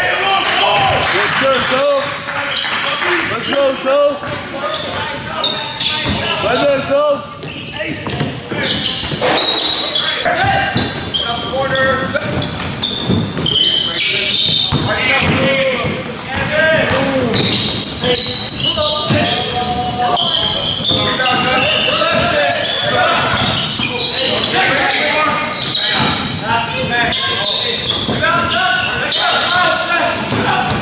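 Live basketball play on a hardwood gym court: the ball dribbling and bouncing, sneakers squeaking in short high chirps, and players and spectators calling out indistinctly.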